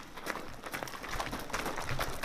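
Soldiers running, their footsteps making quick, irregular knocks and scuffs.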